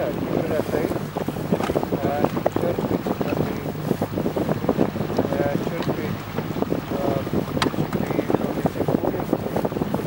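Outboard motor of a Zodiac inflatable boat running steadily at low speed through brash ice, with wind buffeting the microphone in dense, irregular gusts.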